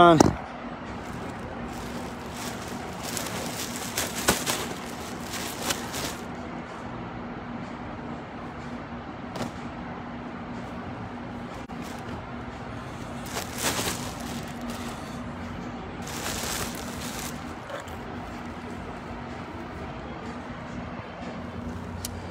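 Outdoor ambience: a steady low hum under a constant haze, with a few louder rushes of noise that swell and fade, about three seconds in, near the middle and again a few seconds later.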